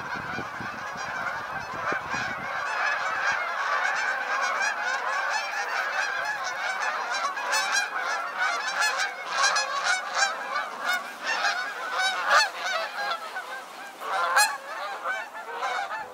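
A large flock of Canada geese honking continuously, many calls overlapping, as they take off from water and fly off. Splashing and wingbeats run under the calls for the first few seconds, and a few louder single honks stand out near the end.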